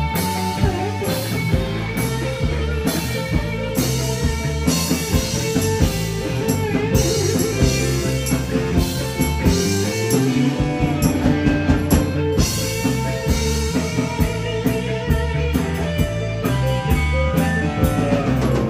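A live rock band playing an instrumental passage at full volume: electric guitars, keyboard and a drum kit keeping a steady beat, with no singing.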